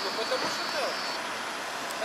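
Faint voices of people talking a little way off over a steady hum of road traffic.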